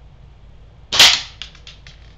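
A single .177 air gun shot: one sharp crack about a second in as a Destroyer pellet punches through a plate target. It is followed by a few quickly fading short clicks over the next second.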